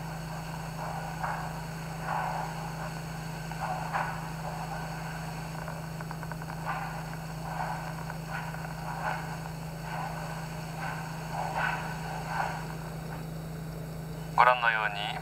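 Dance shoes brushing and stepping on a wooden floor, a soft swish about once a second, as a ballroom couple works through slow foxtrot feather steps and three steps. A steady low hum runs underneath.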